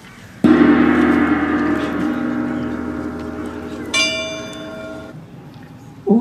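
A large gong on a wooden stand is struck about half a second in and rings with a slow fade. A second, brighter stroke about four seconds in rings on and dies away a second later.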